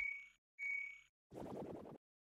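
Electronic intro sound effects of a news programme's title sequence: two short beeps at the same high pitch, then a brief low buzz made of rapid pulses.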